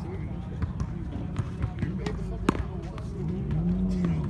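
Tennis ball struck by a racket with a sharp knock about two and a half seconds in, with a few fainter ball knocks before it, over a steady low outdoor rumble. Near the end, a passing vehicle's low engine hum rises and then falls.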